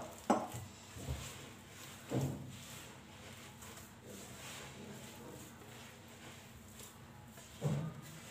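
Hand mixing and kneading bread dough in a glazed clay bowl: faint soft handling sounds with a few short knocks as the dough is pressed against the bowl, at the start, a little past two seconds in, and near the end.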